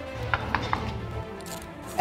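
Three quick knocks on a wooden office door, about a fifth of a second apart, early on a cue to be let in.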